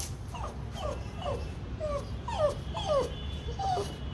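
Pug whining in a quick series of about ten short whimpers, each falling in pitch, at a cat that has escaped up out of its reach.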